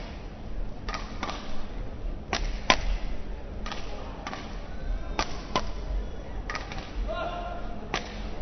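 Badminton rackets striking the shuttlecock in a rally: a run of sharp cracks, often in close pairs, one or two a second, in a large hall. A short squeal near the end fits a shoe squeaking on the court.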